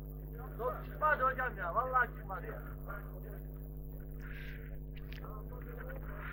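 A few short calls from a man's voice about one to two seconds in, over a steady hum.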